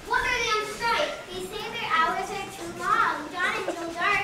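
Several young girls' voices from the stage, overlapping.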